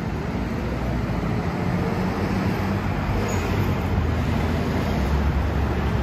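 Road traffic on a city street: vehicles passing with a steady low rumble, growing a little louder near the end as a heavy lorry drives by.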